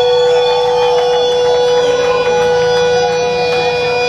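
Amplified electric guitar sustaining a drone through the stage amps: one steady, unchanging ringing tone with fainter held notes and a noisy wash above it.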